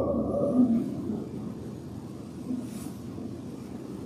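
A man's voice trails off at the very start, then a low, steady rumble of room noise with no distinct events.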